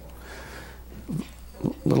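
A pause in a man's speech at a microphone: steady low hum, then two brief low hesitation sounds from his voice in the second half, and he resumes talking at the very end.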